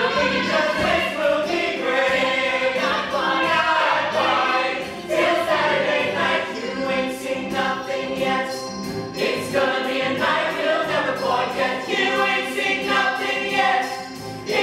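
Cast ensemble of male and female voices singing together in a stage-musical number, with musical accompaniment.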